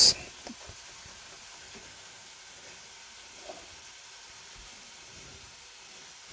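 Chicken pieces frying in a pan: a faint, steady sizzle, with a few soft knocks in the first second.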